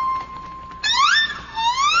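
TV game-show sound effect: a steady electronic beep for nearly a second, then a tone that sweeps up in pitch and starts another rise-and-fall glide, like a whistle.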